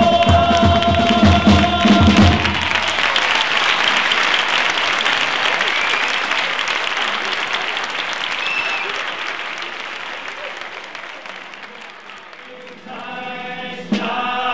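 A carnival chirigota choir holds a final sung chord over drum beats, cut off about two and a half seconds in. Audience applause follows and slowly dies away, and the choir starts singing again about a second before the end.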